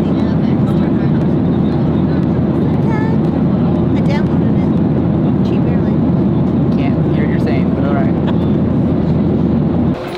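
Loud, steady cabin noise of a jet airliner in flight, an even rumble and rush of engine and air noise.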